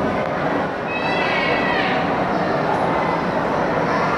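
A child's high-pitched squeal, about a second long and falling in pitch at the end, over the steady chatter of a crowded ice rink.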